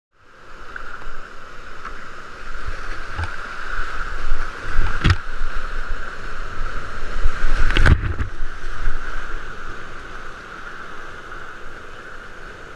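Whitewater rapids rushing loudly around a kayak, heard from right on the boat, with low rumble from the churning water. Two sudden sharp hits stand out, about five and eight seconds in.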